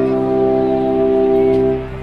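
Film score: brass holding one sustained chord over a low bass note, dropping away shortly before the end.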